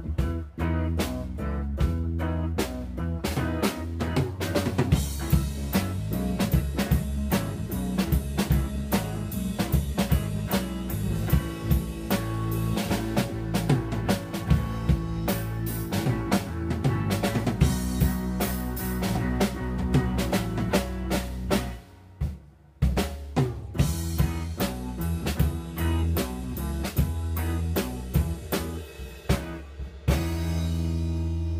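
Live rock trio playing an instrumental passage: a drum kit with busy snare and bass drum hits over electric bass and electric guitar. The band stops dead for about a second a little past the middle, then comes back in.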